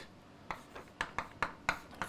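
Chalk writing on a chalkboard: a few sharp, irregular taps and scratches as the chalk strikes and drags across the board to write symbols.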